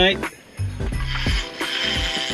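Fishing reel ratcheting with a fish on the line, which the angler takes for a shark, heard over background music.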